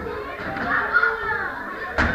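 Many children's voices chattering and calling out at once in a large room, with a sharp smack of a kick landing on a striking pad near the end.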